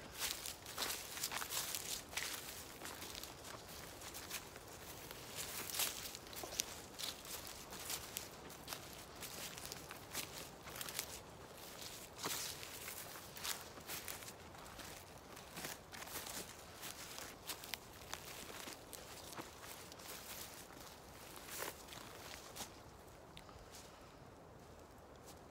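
Footsteps walking through dry grass, brush and leaf litter: irregular crunching and rustling steps, which thin out and fade near the end.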